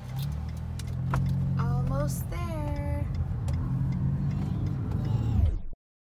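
Steady low road and engine rumble heard from inside a moving car's cabin, with a brief voice sound about two seconds in. The rumble cuts off suddenly shortly before the end.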